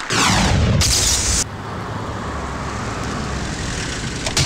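A falling whoosh at the scene change, with a short high hiss about a second in, then a steady low rumble of traffic-like vehicle ambience.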